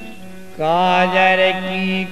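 A male folk singer starts a long held note about half a second in, sliding up into it and then sustaining it, with no drumming under it: the drawn-out sung opening of a Bundeli Diwari verse.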